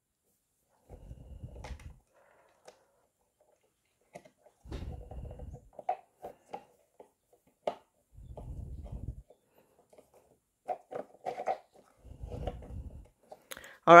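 Small screwdriver driving a tiny screw into a hard plastic toy part: four spells of low grinding and creaking, each about a second long and roughly three and a half seconds apart, with scattered light clicks between. The screw is binding and the driver is damaging its head.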